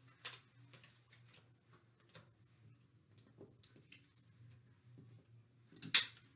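Faint handling sounds: scattered light taps and rustles as cutout footprint shapes are picked up, then a sharper tap just before the end as one is pressed onto a whiteboard.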